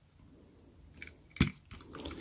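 Small Master Lock combination padlock being handled with its shackle open: a few light metal clicks and one sharper knock about one and a half seconds in.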